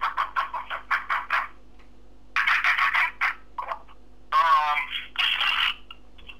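Muffled, narrow-band speech in three short spells, thin as if heard through a telephone or a small speaker, over a steady low hum.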